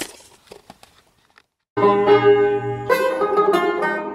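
A banjo starts playing a tune about two seconds in, bright plucked notes ringing over one another after a moment of silence.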